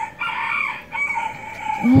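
A long, high-pitched animal call lasting about a second and a half, ending just as a woman says "oh".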